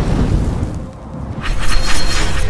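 Logo-animation sound effect: a deep boom hits at the start and its rumble fades over about a second. About a second and a half in comes a bright, crackling burst over a low drone.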